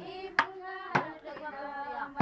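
Group singing, with sharp strikes on handheld metal basins and plastic buckets beaten as drums, twice about half a second apart.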